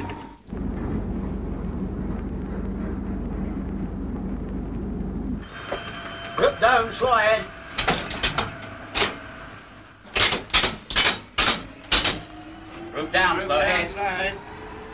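Steady low machinery rumble inside a submarine that stops abruptly after about five seconds. Then come a series of sharp clicks and clunks as the motor switchboard's levers are worked, and near the end a whine rising in pitch as the electric motors start.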